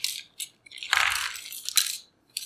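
Thin clear plastic parts bag crinkling and rustling as a paper card and small parts are pulled out of it, with a few short crackles first and a denser burst of crinkling from about a second in.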